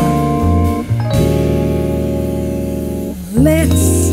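Live vocal jazz: a Rhodes electric piano sustaining chords over upright bass notes, moving to a new held chord about a second in. Near the end a woman's voice comes in, singing a gliding phrase.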